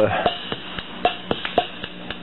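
Preset bossa nova rhythm from a Suzuki (Siel) Keyman49 keyboard's built-in rhythm box: short electronic percussion hits in a syncopated pattern, about six in two seconds.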